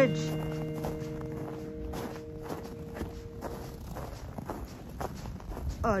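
Footsteps crunching on packed snow at a steady walking pace, about two to three steps a second. The held last chord of background music fades out over the first few seconds.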